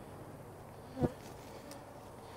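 Honey bees buzzing around a row of hives, a steady hum of many bees in flight. A brief knock comes about a second in.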